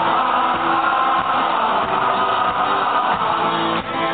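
Live rock band playing with guitars to the fore, heard from within the audience in a concert hall.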